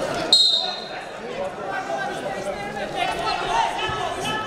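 Greco-Roman wrestlers grappling in a standing tie-up: a sudden sharp slap or thump with a brief high squeak about a third of a second in, over continuous shouting and crowd voices echoing in a large hall.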